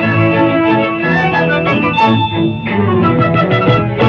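Lively instrumental cartoon score with a quick, even beat; a high held note comes in about halfway through.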